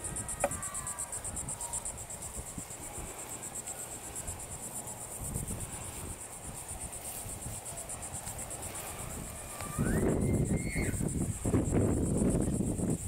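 Insects chirping in a steady, fast-pulsing high trill. About ten seconds in, a louder rustling noise joins them.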